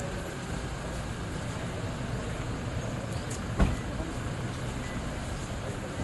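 Steady rumble of a motor vehicle running close by, with one sharp thump a little past the middle.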